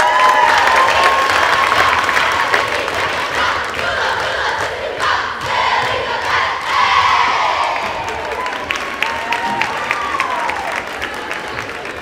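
Crowd cheering and screaming, with scattered claps, as a drill team takes the floor; loudest at the start and slowly dying down.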